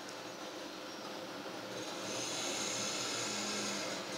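Steady low background hiss with no distinct event, growing a little louder and brighter about halfway through.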